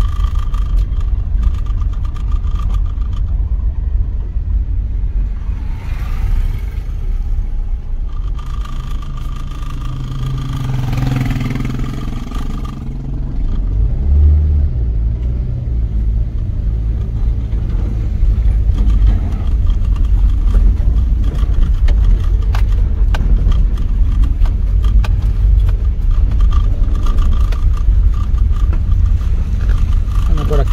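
Road noise heard inside a moving car: a steady low engine and tyre rumble. About 18 seconds in it grows louder and rougher, with many small knocks and rattles, as the car runs on an unpaved dirt road.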